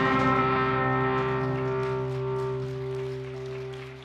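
A live band's last held chord, with electric guitar, bass and keys sustaining together, ringing out and fading steadily away, the higher notes dying first.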